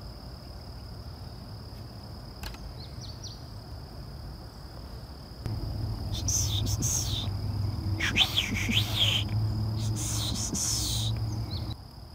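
Insects calling in one steady high note throughout, with birds chirping in quick sweeping calls in the second half. About halfway in, a low steady hum sets in and stops just before the end.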